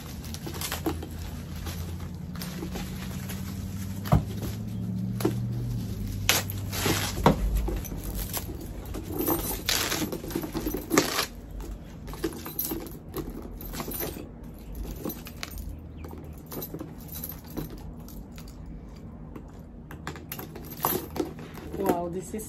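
White wrapping rustling and crinkling as a handbag is unwrapped, with the metal chain strap of a thin chain handle crossbody bag clinking and jingling as it is lifted and handled.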